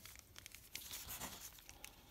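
Faint crinkling and rustling of clear plastic packaging being handled, in scattered small ticks.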